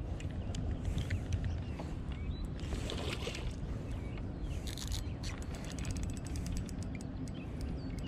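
Spinning reel being wound as a hooked largemouth bass is fought in, with a steady low rumble of wind and handling on a body-worn camera. There are short hissy bursts about three and five seconds in, and a run of fine ticks near the end.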